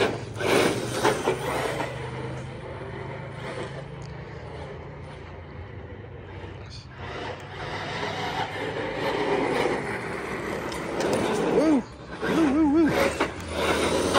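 Team Corally Kagama RC monster truck on a 4S battery driving over asphalt: its electric motor whine rises and falls with the throttle, along with tyre noise. It is louder at the start and again over the last couple of seconds as the truck runs close, and fainter in between while it is far off.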